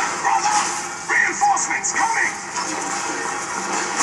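Film soundtrack playing, with background music and voices.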